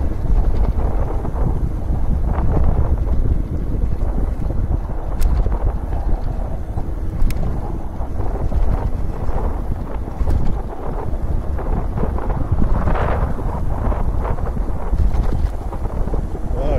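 Steady wind noise buffeting the microphone of a camera carried on a moving e-mountain bike, heaviest in the low end, with a stronger gust about three-quarters of the way through.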